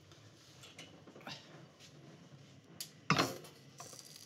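Faint small handling clicks, then about three seconds in a heavy enamelled cast-iron pot full of soup base is set down on a gas burner grate with a sudden loud knock that dies away within half a second.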